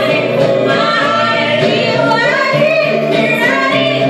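Live acoustic duo: a woman and a man singing into microphones over a strummed acoustic guitar.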